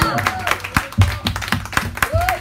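A live band's held final note stops right at the start, followed by a small audience clapping in scattered, separate claps, with a few voices calling out.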